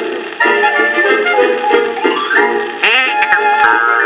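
Old 78 rpm record playing on a portable record player: an instrumental passage of a music-hall song, a melody without singing, in thin old-record sound with a few surface clicks near the end.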